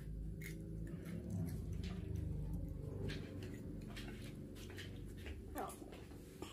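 A child eating a waffle: chewing and small mouth sounds with scattered short clicks, over a low murmur of voices.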